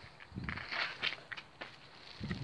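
Black Labrador nosing and mouthing a raw whole mackerel on stone paving: a cluster of short scuffing noises about half a second to one second in, then quieter.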